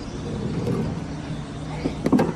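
A vehicle's rear door being eased open over a steady low hum, with faint handling noise and a couple of small knocks near the end.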